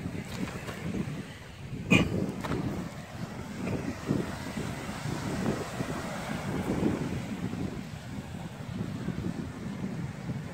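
Wind buffeting the microphone over a steady outdoor rush, with a brief handling knock about two seconds in.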